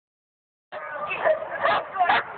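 Young German Shepherd pup barking, a few sharp barks beginning under a second in.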